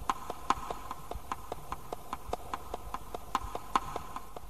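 A steady run of short clicks, about five a second, over a faint steady hum.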